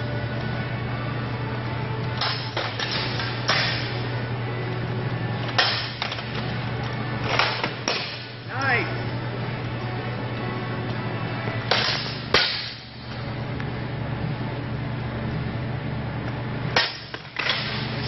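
Steel longswords clanging against each other and against plate armor during sparring: sharp metallic strikes that ring briefly, coming in scattered clusters, about a dozen in all, the loudest about twelve seconds in, over a steady low hum.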